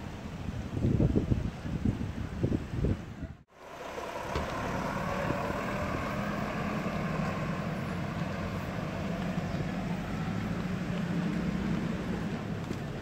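Gusts of wind buffeting the microphone for the first few seconds, then a steady engine hum from a truck running in the street, going on evenly from about four seconds in.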